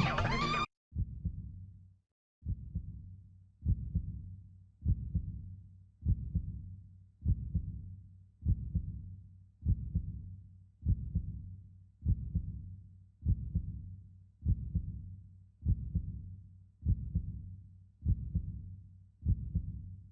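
Film soundtrack cutting off abruptly, then a low bass thump sound effect repeating evenly about every 1.2 seconds like a slow heartbeat, each thump dying away before the next.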